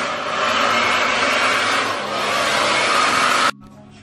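Handheld hair dryer blowing on long hair, a steady rush of air with a faint high whine. It stops suddenly about three and a half seconds in.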